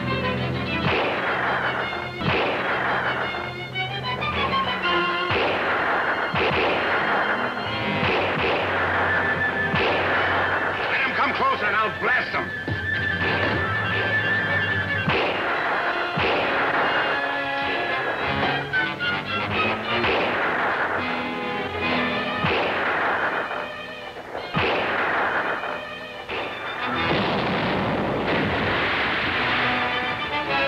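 Movie battle soundtrack: dramatic orchestral music over repeated flintlock rifle shots and the booms of a small cannon, with shouting voices.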